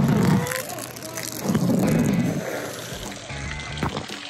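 Water splashing down over a person and the phone, in two loud surges, with a short cry.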